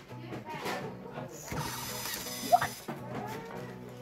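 LEGO EV3 motor driving the plastic gears and tank-tread conveyor, a mechanical gear-and-ratchet whirr that gets brighter for about a second and a half midway, with one short sharp sound about two and a half seconds in.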